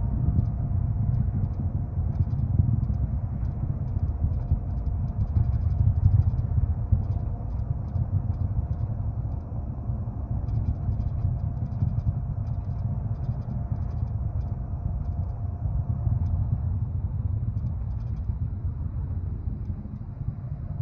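Deep, steady rumble of a Falcon 9 rocket launch heard from the ground at a distance, rolling on with slow swells in loudness.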